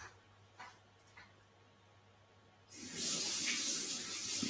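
A faint low hum, then about three seconds in a steady rushing hiss comes in and holds, like running water or air on a call microphone.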